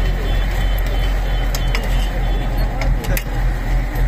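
Steady low mechanical rumble, like a running engine, with faint voices and a few sharp clicks about halfway through and near the end.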